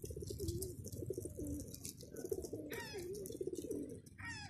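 Feral pigeons cooing, low wavering coos repeated over and over, with fine high clicks throughout. About three-quarters of the way through a higher call with a run of falling notes cuts in.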